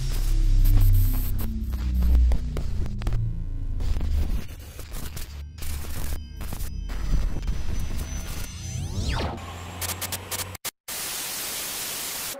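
Electronic outro sound design: a deep bass drone with falling tones, broken up by glitchy stutters and short dropouts, then a rising sweep. About eleven seconds in it gives way to steady static hiss.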